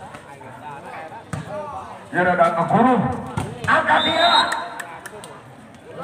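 Men's voices calling out loudly during a volleyball rally, with several sharp smacks of the ball being struck by hand, a few of them close together near the end.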